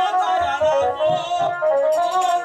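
Bengali folk-theatre accompaniment: a wavering, high melody line played over hand-drum beats.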